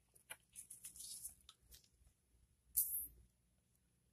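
Faint scattered clicks and light rustling from gloved hands handling blood-collection tubes during a blood draw, with one short, louder scrape about three seconds in.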